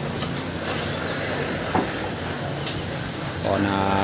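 A small engine running steadily with a low hum, and a few sharp knocks from construction work.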